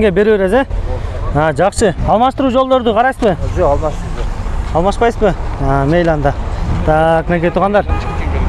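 Speech over a steady low rumble.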